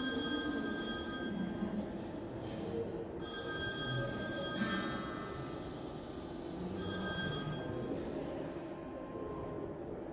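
High electronic ringing tones from an artwork's soundtrack, several pitches sounding together in three bursts: about two and a half seconds, then about a second and a half ending in a sharp click, then about a second near the end. A low, steady room hum runs underneath.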